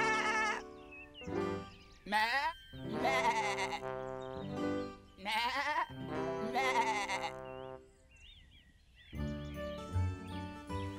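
A cartoon sheep bleating several times in quavering 'baa' calls over light children's background music. The bleats stop after about seven seconds, and the music briefly drops away before coming back near the end.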